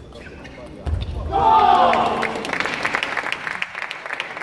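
Table tennis ball clicking off bats and table, with a dull thump about a second in as the rally ends, then a loud celebratory shout after the point is won, followed by scattered clapping in a large hall.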